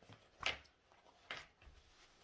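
Two brief, faint rustles of fabric being handled and smoothed flat, about a second apart.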